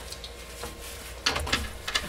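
Short sniffs at a new fabric waist pack held up to the nose, with a little handling noise from the pack, most of it about a second and a quarter in.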